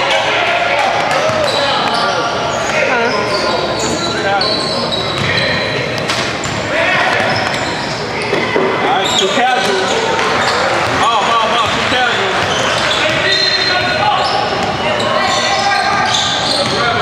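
Basketball being dribbled and bouncing on a hardwood court during a game in a large gymnasium, over the indistinct voices of players and spectators.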